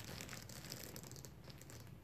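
Faint handling noise of a leather tote's handles being held up and moved, a few soft ticks over quiet room tone.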